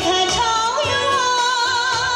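A woman singing a Chinese pop ballad into a microphone over musical accompaniment; just before a second in her voice glides up into a long held note with vibrato.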